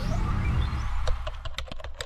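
Logo-animation sound effect: a low rumble under a falling whoosh that fades, then a quick irregular run of keyboard-typing clicks in the second half.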